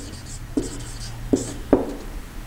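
Marker pen writing on a whiteboard in short strokes, with a few sharp clicks.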